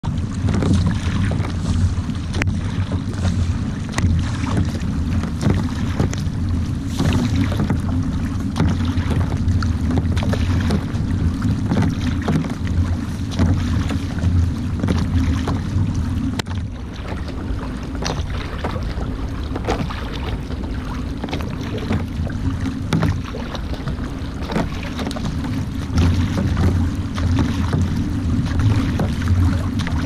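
Surfski being paddled: the carbon paddle blades splash into the water on alternate sides in a steady rhythm, over water rushing along the hull. Wind on the microphone adds a constant low rumble.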